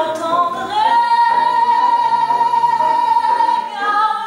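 A woman singing live, holding one long high note for about three seconds, over piano and double bass.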